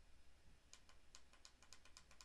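Faint typing on a computer keyboard: a quick run of light key clicks, about six or seven a second, starting under a second in.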